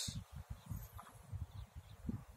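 Faint, irregular low thumps and rumble on a phone's microphone, with no clear tone or rhythm.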